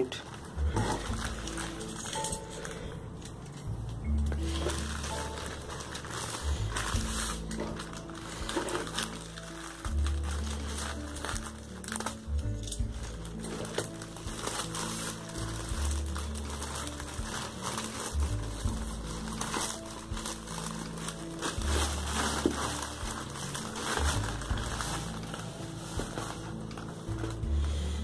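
Background music with held bass notes that change every few seconds, over the crinkling and rustling of a plastic mailer bag being torn open and handled.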